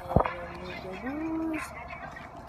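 A knock on the phone's microphone as the camera is handled. About a second in comes a short, low voice sound that rises and then holds.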